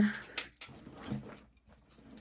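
The end of a drawn-out spoken "then", followed by a single sharp click and faint rummaging as things are handled inside a vinyl tote bag. The handling fades to quiet in the second half.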